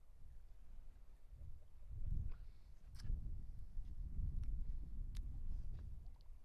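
Gusty wind buffeting the microphone: a low rumble that swells in gusts about two seconds in and again for most of the second half, with a couple of faint clicks.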